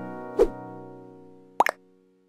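Short logo sting: a held chord fading away, with a sharp pop about half a second in and a quick double click near the end.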